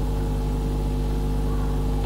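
Steady electrical mains hum with a few fixed higher tones above it, even in level throughout.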